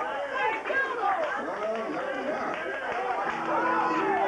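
Several voices in a gospel church service calling out and vocalising at once, their pitches rising and falling over one another, with steady held musical notes coming back about three seconds in.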